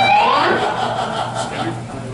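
Electric guitar holding a sustained note that slides upward in pitch about half a second in, with talking in the room.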